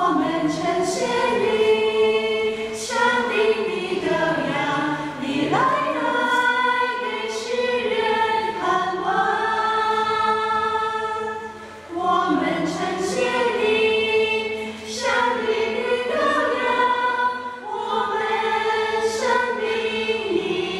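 Small mixed choir of men and women singing a hymn in sustained phrases, starting right at the outset, with a brief breath between phrases about twelve seconds in.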